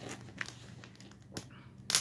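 Small wooden sticks handled and laid onto a little fire in a tinfoil tray: three short sharp clicks and snaps of wood and foil, the loudest near the end.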